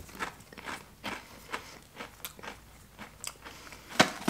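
A person chewing a Pringles potato chip with the mouth closed, with irregular crunches a couple of times a second.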